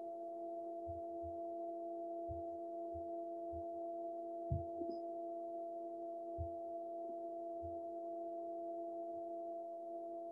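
A steady hum of several held tones sounding together, with a few faint soft thumps scattered through it.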